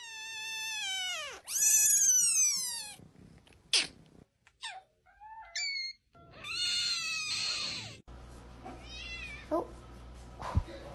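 Kittens meowing: two long, high meows that drop in pitch at the end, the second louder, in the first three seconds. Then come a few short mews and another drawn-out cry from very young kittens about six seconds in.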